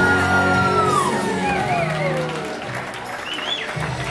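The end of a slow dance song: a held note slides down in pitch and fades out. Guests start whooping and cheering over it.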